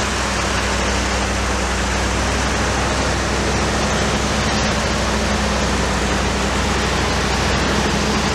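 Bentley V8 engine driving a generator, running on LPG at a steady, servo-governed speed, loud and even with a constant low hum.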